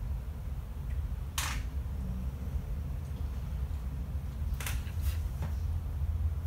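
A few brief soft swishes of fingertips rubbing powder eyeshadow onto the skin of the arm: one about a second and a half in, then several more near the end. Under them runs a steady low hum.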